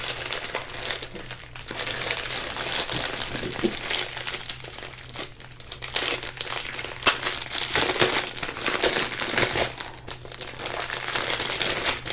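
Thin clear plastic sleeve crinkling and rustling as hands work a strip of sealed diamond-painting drill packets out of it, the crinkling coming and going unevenly.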